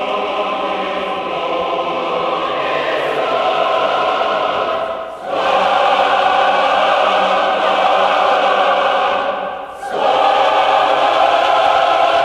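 A choir singing long, held chords in a slow, stately passage. It breaks off briefly about five seconds in and again near ten seconds, and each new phrase comes in louder.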